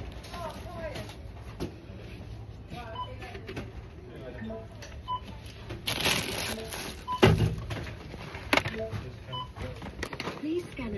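Supermarket checkout barcode scanner beeping as items are scanned, one short beep about every two seconds. There is a burst of rustling about six seconds in and a loud thump just after seven seconds, with voices in the background.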